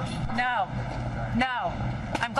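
Steady city traffic hum, with two short voice calls about a second apart, rising then falling in pitch, from the press crowd outside the courthouse.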